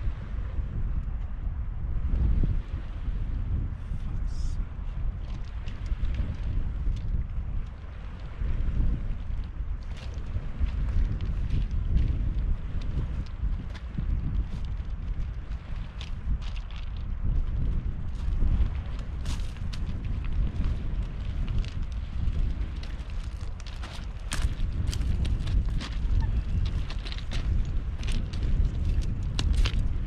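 Wind buffeting the microphone in a steady low rumble. Sharp clicks and crunches grow more frequent in the second half: footsteps on shingle coming closer.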